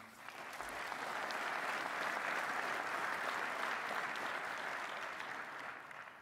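Theatre audience applauding, swelling over the first second, holding steady, then dying away near the end.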